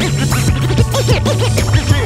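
Turntable scratching: a record pushed back and forth under the needle, giving many quick rising-and-falling sweeps over a hip hop beat with a bass line.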